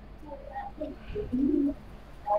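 Low cooing bird calls: a string of short notes, the loudest a steady low coo held briefly just past the middle.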